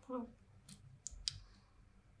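A woman says a hesitant "Well," followed by three faint, sharp clicks in the pause.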